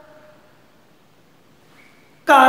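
Faint room tone in a pause between a man's spoken phrases, with his voice trailing off at the start.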